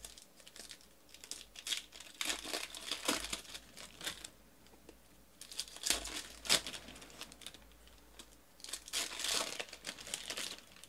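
Foil trading-card pack wrappers crinkling and tearing as packs are opened and handled by hand. The crackles come in three bursts, with quieter gaps between them.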